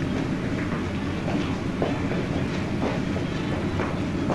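Footsteps of several men walking across a room, as faint irregular knocks over the steady hiss and low hum of an old optical film soundtrack.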